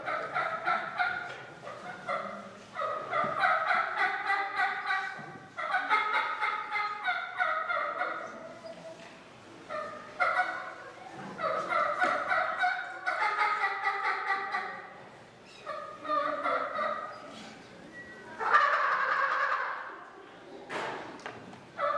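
A turkey call worked in a calling contest, imitating a wild turkey: about eight bursts of rapid, repeated notes with short pauses between them, the loudest burst near the end.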